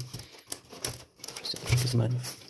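A hand rubbing and patting a rubberized hatching mat in the bottom of a polystyrene foam incubator: a few short rustles and light taps.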